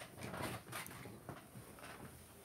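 Faint rustling of bedding with a few soft knocks from the phone being handled.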